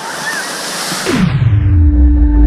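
Surf and splashing water in the shallows for about a second, then the sound drops away in a falling sweep into a deep low rumble as a slow-motion effect sets in, and a steady ambient music tone begins.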